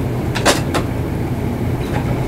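Steady low background hum, with two light clicks about half a second in as a makeup compact is handled and set down.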